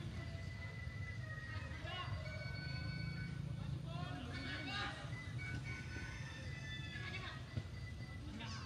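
Players shouting and calling across a football pitch, with wind rumbling on the microphone. Music with long held notes plays in the background.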